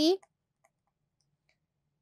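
A few faint, light clicks of a stylus pen tapping on a pen tablet as it writes.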